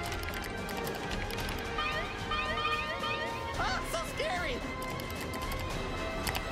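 Cartoon soundtrack: tense music under a rushing wind effect and rapid clicks, with a run of short rising electronic chirps about two seconds in and a voice crying out about four seconds in.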